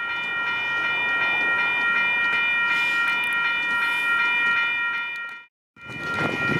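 Ambient sound beside a stopped freight train: a steady high whine of several tones over an even rushing hiss. It cuts off abruptly about five and a half seconds in.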